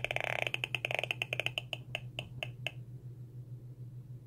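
Audio signal from a Gigahertz Solutions NFA 1000 field meter: rapid high ticking that slows into separate beeps and stops a little under three seconds in, as the measured electric field drops once the shielding blanket covers the power strip. A steady low hum runs underneath.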